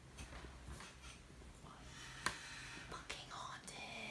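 Faint whispering with no voiced pitch, over a low steady hum, with a single sharp click a little past the middle.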